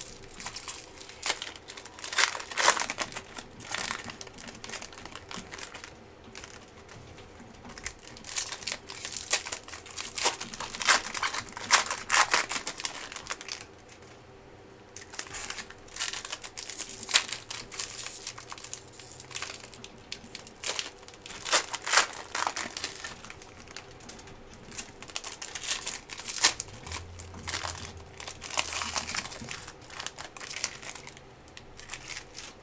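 Foil wrapper of a Bowman Chrome hobby pack of trading cards crinkling and tearing as hands work it open, in irregular bursts with short quieter pauses.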